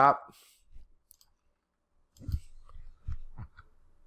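A few computer mouse clicks with low knocks, spread over about a second and a half.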